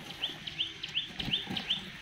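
A bird chirping: a quick run of short high chirps, about four a second.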